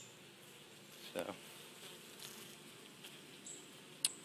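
Faint, steady buzzing of a mass of honey bees on an open hive frame.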